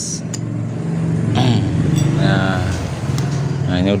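A motor vehicle's engine humming low and steady, growing louder about a second in and easing off near the end.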